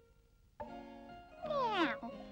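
Quiet at first, then held music notes come in about half a second in. Near the end comes a loud cat's meow that slides steeply down in pitch.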